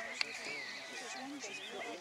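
A horse whinnying, a wavering high call early on, over the murmur of people talking, with one sharp click about a fifth of a second in.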